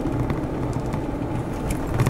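Steady engine and tyre rumble heard from inside a moving car, with a few light clicks near the end.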